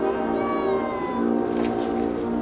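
Marching band holding sustained chords, with a high note that bends downward about half a second in over the held harmony, and a few light percussion hits near the end.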